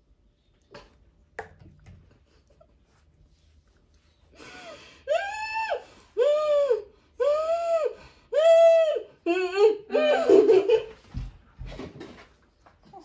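A woman's drawn-out cries of disgust after gulping down a foul-tasting shot: about four seconds in, five high, rising-and-falling cries come roughly once a second. They break into laughter near the end.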